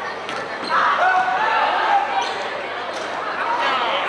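Basketball game on a wooden gym floor: a few sharp knocks of the ball bouncing on the hardwood, with players and spectators calling out.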